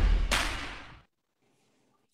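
Final hit of a promo video's soundtrack: one sudden sharp whoosh-like impact effect about a third of a second in, dying away within about a second as the music ends.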